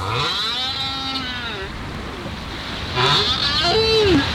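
Whale calls recorded underwater. A long arching cry rich in overtones is followed about three seconds in by a shorter call that ends in a falling moan, over a steady wash of sea noise.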